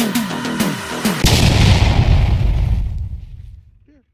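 Electronic intro music with a beat and falling, wobbling notes, cut off about a second in by a deep boom whose rumbling tail fades away over the next two and a half seconds.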